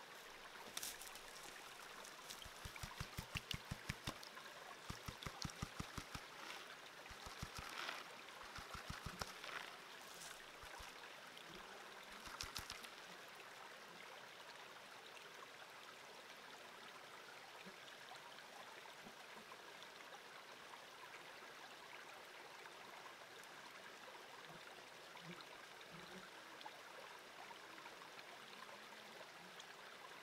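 Water sloshing in a plastic gold pan as a test sample is panned. It comes in quick runs of about five shakes a second during the first dozen seconds, over the faint steady trickle of a small creek.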